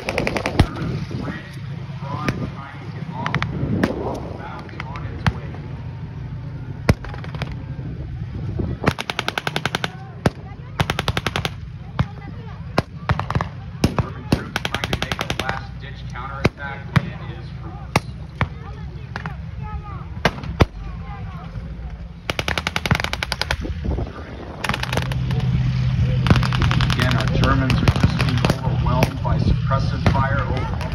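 Blank gunfire in a WWII battle reenactment: repeated rapid bursts of machine-gun fire and scattered single rifle shots. A steady low engine drone is heard near the start and again through the last few seconds.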